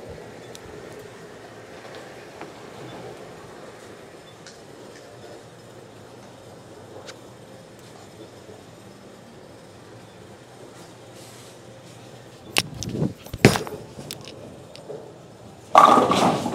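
Low, steady bowling-alley background noise, then a reactive-resin bowling ball (Roto Grip Exotic Gem) crashing into the pins near the end, two loud clatters about a second apart.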